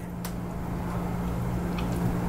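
A steady low hum with a faint rumble, and a couple of faint short clicks from a mouth chewing a mouthful of pierogi.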